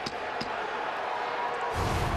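Hockey arena crowd noise with a couple of short knocks. About 1.7 seconds in, a loud TV replay-transition whoosh sound effect comes in with a deep rumble.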